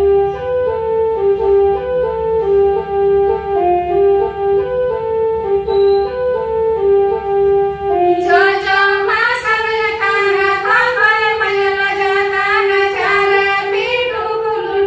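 A melody of held, stepped notes on an organ-like instrument, joined about eight seconds in by women singing a Santali dong song together over it.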